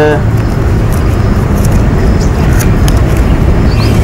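Steady low rumble of outdoor background noise with a constant low hum, like nearby road traffic, and a few faint short ticks.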